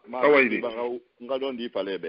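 Speech only: a voice talking in three short phrases separated by brief pauses, with a muffled, radio-like sound.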